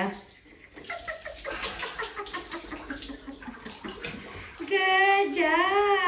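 Water poured from a tabo (hand-held dipper) splashing over a person's head and body in a shower. About five seconds in, a long, high, wavering vocal cry rises above the splashing.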